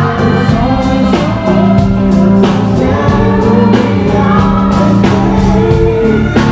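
Live band music: a man singing lead into a microphone over a drum kit, guitar and keyboards, with a steady beat.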